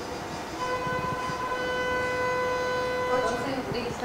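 A single steady tone at one pitch, held for about three seconds from just after the start, fading in and out.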